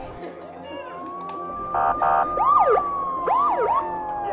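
Police siren: a wail rises and holds high, two short blasts come about two seconds in, then quick up-and-down yelp sweeps while the wail slowly falls.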